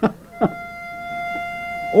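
A barbershop pitch pipe sounding one steady reedy note for about a second and a half, starting about half a second in: the quartet is taking its starting pitch before a song.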